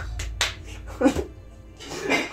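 A quick run of sharp hand claps in the first half-second, over background music with a steady low bass.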